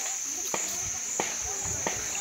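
A steady, high-pitched drone of insects, with faint distant voices under it and a short sharp knock about every two-thirds of a second.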